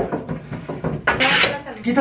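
A knock at the start and a short rustling scrape about a second in as a mattress is carried and shifted over a wooden-slat bed frame, with voices over it and a spoken 'sorry' near the end.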